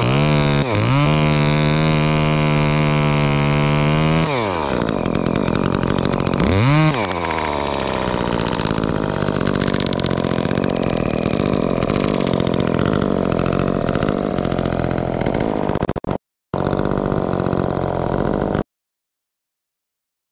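Echo top-handle two-stroke chainsaw at high revs, cutting through a pine trunk. Its pitch holds high, then falls about four seconds in, rises once more in a short rev, and runs on lower and rougher. The sound breaks off for a moment late on and stops shortly before the end.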